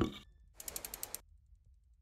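Sound effect of an animated TV-channel logo sting. A preceding effect fades out at the start. About half a second in comes a quick run of about six clicks over half a second, then silence.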